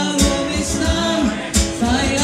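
Live music from a duo: guitar with singing.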